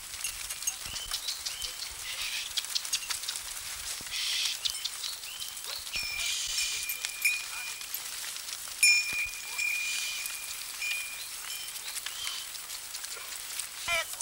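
A flock of sheep moving along a stony path: many small clicks and clatters of hooves on rock, with high whistles, two of them held for a second or two about six and nine seconds in.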